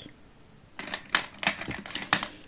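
A few light, sharp clicks and taps in the second half, with faint rustling between them: small makeup items being handled and set down on a desk.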